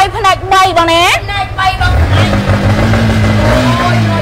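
Motorcycle engine revved: after a steady low idle, about two seconds in the throttle is opened and the engine note rises slowly, is held, and drops back near the end.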